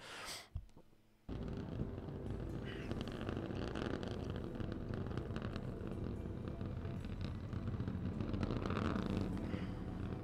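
Steady engine noise from SpaceX Starship SN15's three Raptor engines burning during ascent, heard on the launch webcast's onboard audio. It cuts in suddenly about a second in after a near-silent moment and holds steady, heaviest in the low end.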